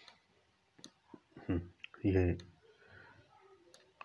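A few scattered computer mouse clicks, with two brief bits of a man's voice between them, one and a half to two and a half seconds in.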